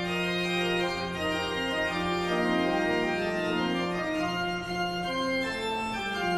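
Pipe organ playing slow music in several voices, with long-held low notes under moving upper lines.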